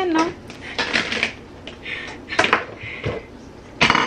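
Kitchenware being handled: a few sharp clicks and knocks of dishes and plastic food containers, the loudest near the end, over a faint low voice.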